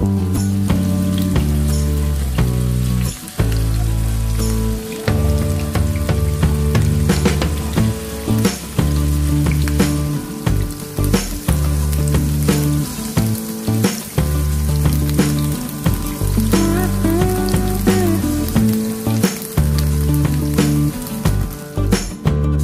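Blocks of firm tofu frying in hot oil in a pan: a steady sizzle with frequent small crackles and pops. Background guitar music with a plodding bass line plays over it.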